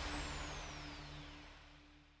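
The tail of the show's closing jingle dying away: a held low tone with a falling, whistle-like sweep over it, fading out over about two seconds.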